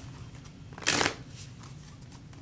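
A tarot deck being shuffled by hand: one short rustling burst of cards sliding against each other about a second in, with a few faint card clicks.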